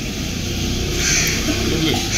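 Crows cawing a few times over a crowd's murmuring voices.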